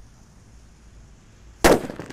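The lit fuse of a mercon petir firecracker hissing faintly, then one very loud firecracker bang about one and a half seconds in.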